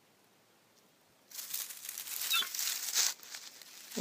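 Dry leaf litter crackling and rustling as it is disturbed. It starts suddenly about a second in, an uneven run of crisp crackles, and drops away near the end.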